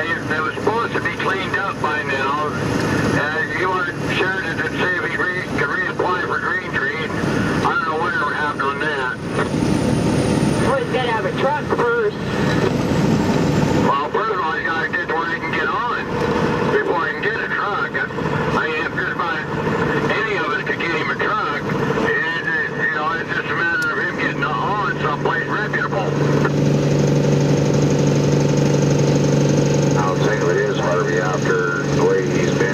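Cab of a moving vehicle at highway speed: steady engine and road noise with indistinct voices talking over it. In the last few seconds a steady low engine hum comes up louder.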